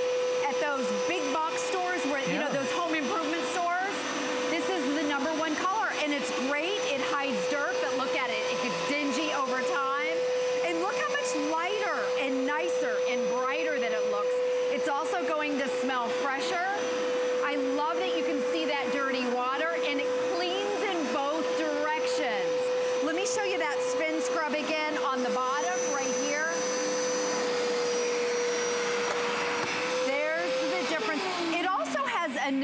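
Hoover Power Scrub Elite carpet cleaner running steadily, its suction motor giving a constant whine, with irregular gurgling as it pulls dirty water up out of the carpet. The motor's pitch sags slightly near the end.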